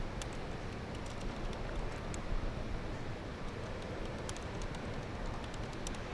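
Computer keyboard typing: faint, irregular key clicks over a steady background din.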